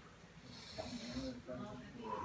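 A man breathing after swallowing a shot of tequila. He draws a hissing breath in through his nose about half a second in, with a brief voiced sound, then starts to breathe out through his mouth near the end.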